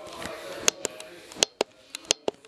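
About five sharp clicks and knocks spread over two seconds, over a faint murmur of voices.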